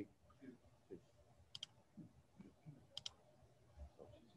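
Near silence: room tone with a few faint clicks, a pair about one and a half seconds in and another pair about three seconds in.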